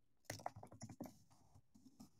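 Faint typing on a computer keyboard: a quick run of key clicks that thins out after about a second.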